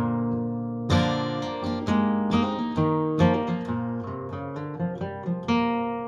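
Acoustic guitar with a capo played on its own: a chord rings out, then fresh strums with picked notes come roughly once a second.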